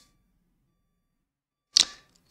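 Near silence, then a single short, sharp click near the end.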